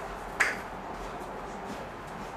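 A single sharp click about half a second in, over a steady faint hiss.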